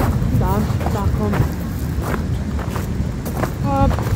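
A few short voice sounds over a steady low outdoor rumble on a handheld phone's microphone.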